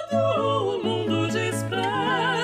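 Soprano and mezzo-soprano singing a late-18th-century Brazilian modinha together, with vibrato, over a continuo of spinet and classical guitar playing low bass notes.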